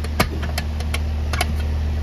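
A handful of sharp metal clicks and knocks as the hinged lid of a metal AC disconnect box is worked loose and pulled open; the first click is the loudest. Under them runs the steady low hum of a running central air-conditioner condenser.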